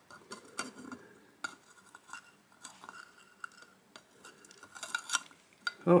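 Scattered light clicks and taps of a clear plastic pot being handled against a glass tarantula enclosure.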